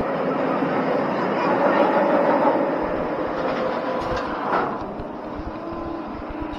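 Roller coaster train running along its track, a steady rumble that swells a couple of seconds in, with a few sharp clicks later on.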